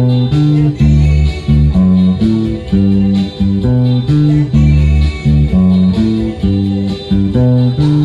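Electric bass playing a triad-based cumbia bass line in D major, moving through D, A and G in a steady, repeating rhythm of plucked low notes.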